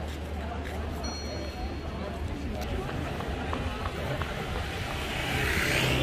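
Outdoor street ambience: indistinct chatter of passers-by and people at café tables over a low steady rumble. A brief thin high tone sounds about a second in, and a swell of hiss comes near the end.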